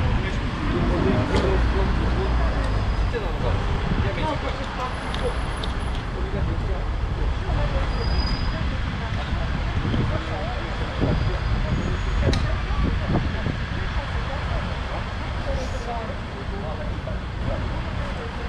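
Steady low rumble of street traffic and a city bus standing at the stop with its engine running, with indistinct voices over it.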